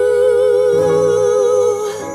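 Gospel song: a singer holds one long note with vibrato over sustained low accompaniment, the level dropping away near the end.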